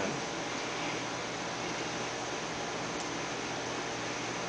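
Steady background hiss of room tone, with no distinct sounds standing out.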